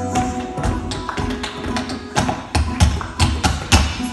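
Tap shoes striking the stage floor in quick, uneven runs of sharp clicks and heavier heel drops, the loudest strokes bunched in the second half, over faint backing music.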